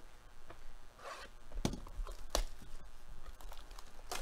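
Plastic shrink-wrap on a cardboard trading-card box crinkling and tearing as it is opened, with a few sharp knocks from the box being handled, the loudest a little under halfway in and again past the middle.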